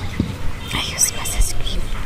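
Soft whispering close to the microphone, with a hissy stretch in the middle.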